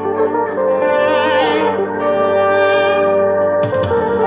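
Electric guitar playing held lead notes with vibrato over a backing track of sustained chords. Low percussive hits come in near the end.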